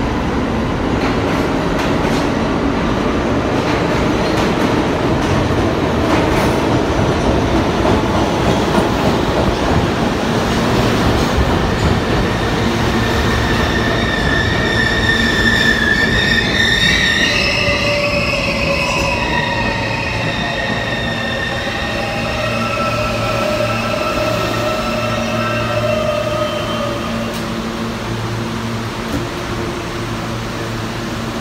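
An R160B subway train with Siemens AC propulsion pulling into a station, loud with the rumble of wheels on rails. From about halfway, high whining tones rise over the rumble, and several of them fall in pitch as the train brakes. They die away a few seconds before the end as it comes to a stop.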